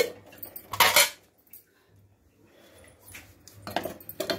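Steel cooking pots and utensils knocking and clattering: a loud knock at the start and another about a second in, then a run of rapid clinks near the end, over a faint low steady hum.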